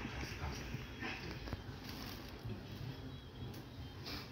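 Low steady rumble inside a stationary passenger train carriage, with faint voices in the background.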